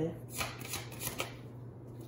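Tarot cards being shuffled: a few quick papery card strokes in the first second or so, then quieter.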